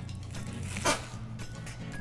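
Soft background music, with one brief rustle about a second in as a red ti leaf is handled.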